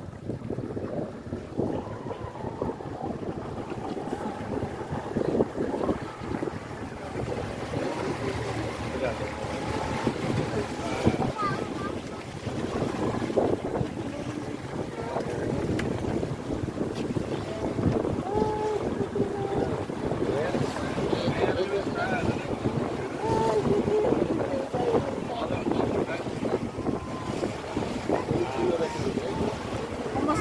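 Wind buffeting the microphone over sea water slapping and splashing against the hull of a small open boat, steady throughout, with short pitched calls here and there in the second half.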